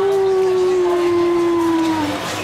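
A person's voice holding one long drawn-out note, sliding up at the start and sinking slightly in pitch.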